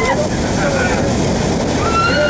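Loud steady rush of wind and aircraft engine noise through the open door of a jump plane in flight, with voices shouting over it near the start.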